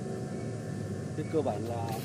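Steady low background rumble, with a voice speaking faintly and briefly about a second and a half in.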